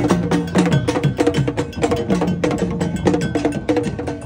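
Traditional Akan procession drumming: large wooden drums carried on porters' heads and beaten with curved sticks in a fast, dense rhythm, with a metallic bell-like clank riding over the drum strokes.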